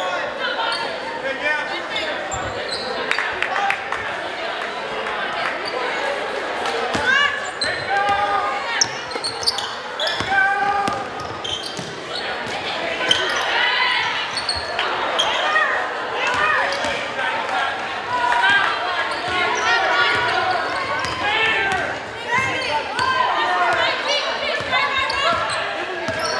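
Basketball being dribbled and bounced on a hardwood gym floor during a game, over the steady voices of spectators and players, echoing in the large gym.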